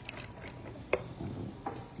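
Sliced strawberries tipped from a small bowl into a plastic mixing bowl of liquid strawberry Jello mixture, a soft handling sound with two light clicks, about a second in and near the end.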